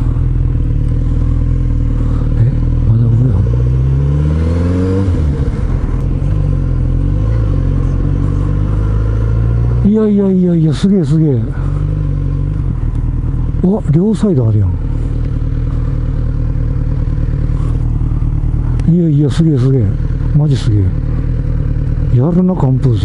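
Kawasaki Z900RS 948 cc inline-four engine running while riding, heard from the rider's position; it rises in pitch for a couple of seconds about three seconds in as the bike speeds up, then runs steadily.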